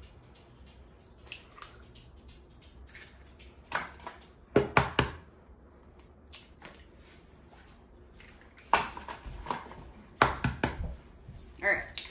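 Eggs being cracked by hand into a plastic bowl: sharp shell taps and cracks in short clusters, the loudest about four and a half seconds in and more near nine and ten seconds.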